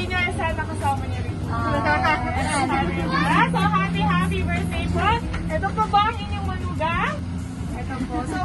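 Women's voices talking and exclaiming, with several sharp rising calls, over a steady low hum.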